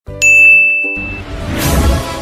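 A single bright ding sound effect struck once and ringing out for about a second, followed by music with a heavy bass fading in near the end.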